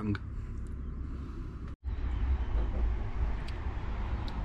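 Outdoor wind noise on the microphone: a low, uneven rumble with a lighter hiss above it. It cuts out completely for a split second a little under two seconds in, then carries on.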